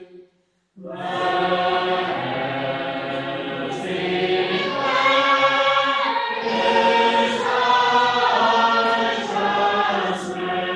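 A congregation singing a psalm unaccompanied, many voices together on long held notes. The singing breaks off briefly just after the start, then resumes for the next line.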